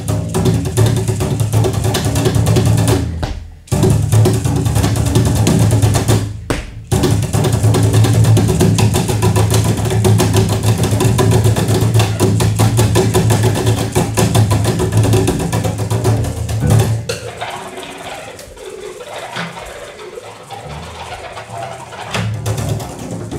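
Double bass played percussively, a dense run of rapid strokes over a strong low pitch. It breaks off briefly about three and about six seconds in, and grows quieter and thinner after about seventeen seconds.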